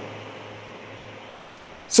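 Room noise in a pause between speech: a steady low hum and faint hiss that fade slightly, before a man's voice starts again right at the end.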